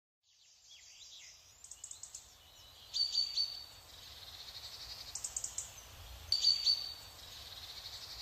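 Small birds chirping and calling, loudest about three seconds in and again just past six seconds, with a run of quick, rapid chirps in between, over a faint low background hum.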